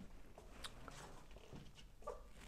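Near silence: quiet room tone with a low hum and a few faint clicks.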